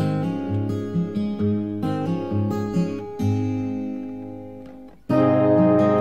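Acoustic guitar picking the song's closing notes, which die away over about five seconds. Then music with long held notes starts abruptly near the end.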